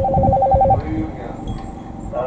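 Electronic two-tone ring, like a telephone ringing, pulsing rapidly about ten times a second and cutting off about three-quarters of a second in.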